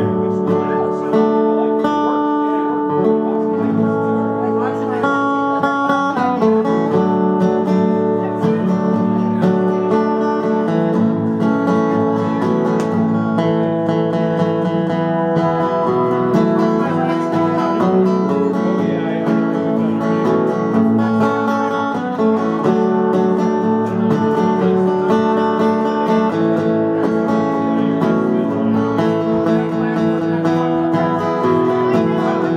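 Acoustic guitar strummed, playing a steady run of chords.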